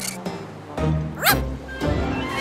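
An animated cartoon dog giving a short, high yip about a second in, over background music.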